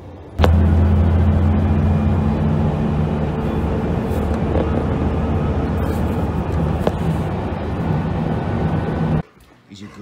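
Ford F-150 pickup driving down a street, its straight-six engine running steadily under way with road and wind noise, loud and close. The sound starts suddenly about half a second in and cuts off abruptly about a second before the end.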